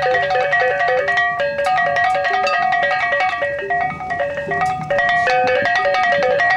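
Balinese gamelan beleganjur ensemble playing a fast passage: hand-held gongs ring out rapid interlocking melodic figures over a dense clatter of percussion strokes. A low steady tone fades out about a second in.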